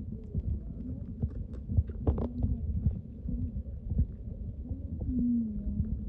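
Underwater sound picked up by a camera submerged in a stream: a steady low rumble of moving water, with scattered small clicks and knocks and a few faint wavering low tones, the clearest near the end.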